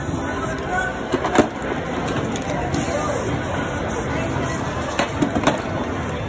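Outdoor street noise with voices in the background, broken by a few sharp taps: two about a second in and a quick cluster about five seconds in.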